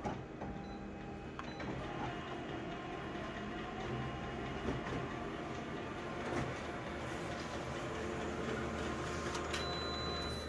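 Colour office photocopier running through a copy job: a steady mechanical whir with a few light clicks, growing a little fuller about seven seconds in.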